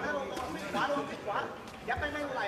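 A man talking: speech only, with no distinct punch or crowd sound standing out.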